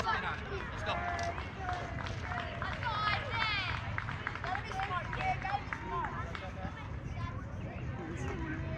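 Indistinct voices of children and onlookers calling out and chattering at a ballfield, none close enough to make out, over a steady low rumble.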